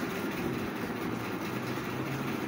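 Steady low background rumble with a faint continuous hum, with no distinct clicks or knocks.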